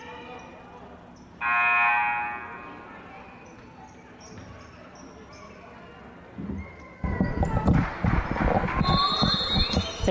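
Gymnasium scoreboard horn sounding once, a short steady buzz about a second and a half in, marking the end of a timeout. In the last three seconds comes a louder clatter of knocks and noise.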